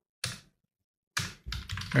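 Computer keyboard being typed on: a short burst of keystrokes about a quarter second in, then more keystrokes from just over a second in.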